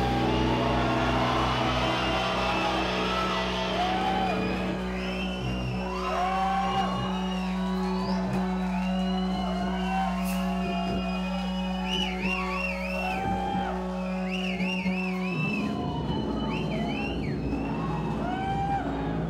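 Guitar and bass amplifiers left ringing with a steady low drone after a doom metal song ends, cutting off suddenly about fifteen seconds in, while the crowd cheers and whistles.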